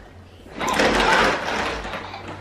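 Plastic baby push walker rolling across a hardwood floor, its wheels rumbling and rattling. The noise builds from about half a second in.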